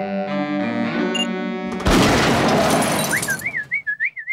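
Cartoon orchestral music with held string notes, cut off about two seconds in by a loud cartoon explosion whose noise dies away. Near the end, a wavering whistle that wobbles up and down and then glides down, from the cat pursing his lips to whistle.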